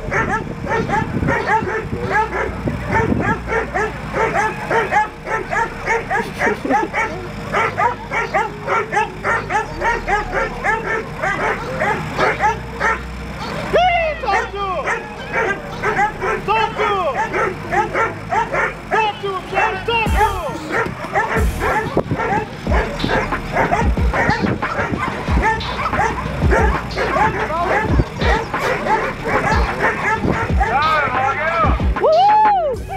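Hog dogs baying a wild hog: rapid, continuous barking at several barks a second, keeping the hog held at bay.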